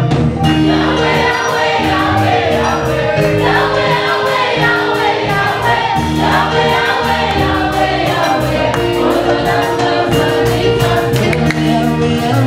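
A small worship choir singing a Lingala gospel song together, backed by electronic keyboards playing held chords and a bass line, over a steady ticking percussion beat.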